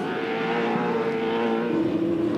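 V8 Supercar racing engine of a Holden Commodore at high revs on track, a steady high note whose pitch drops near the end.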